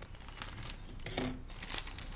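Crinkling and rustling of a delivery package being handled and opened, in short irregular crackles and scrapes.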